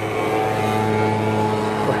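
A steady low hum from a running motor or engine, even in pitch and level throughout.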